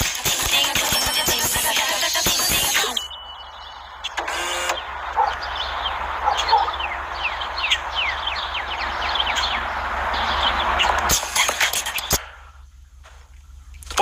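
Soundtrack of a digital-payment TV commercial: music with a beat for about the first three seconds, then a quieter stretch of background sound with many short falling chirps, and a brief loud burst of music about eleven seconds in.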